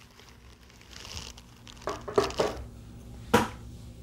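Off-camera handling of a plastic toy figure: soft rustling and scraping, then a sharp plastic click about three and a half seconds in.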